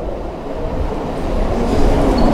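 A steady low rumbling noise.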